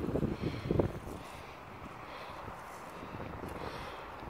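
Wind buffeting a phone microphone, with low irregular rumbling gusts in the first second, then settling into a steady hiss.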